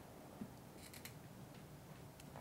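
Faint room tone through an open microphone with a few light clicks and taps, from a laptop being handled and opened at the speaker's table.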